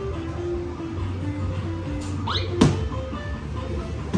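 Electronic arcade game music: a simple melody of short stepped notes over a low steady hum, with a rising whistle-like sweep and a sharp click about two and a half seconds in.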